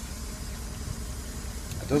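Low, steady background rumble, with a voice starting just before the end.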